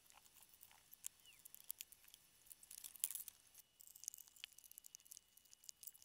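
Near silence with faint, scattered clicks and short rustles.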